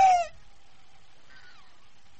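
The end of a woman's high scream, held on one pitch, then sliding down and breaking off about a quarter of a second in. A low, steady background hum follows.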